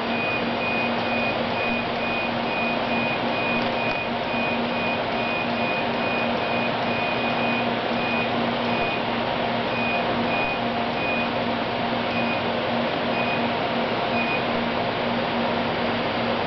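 Laser cleaning machine running with a steady fan whir and low hum, while its electronic warning beeper sounds about twice a second. The beeps thin out after about ten seconds and stop shortly before the end.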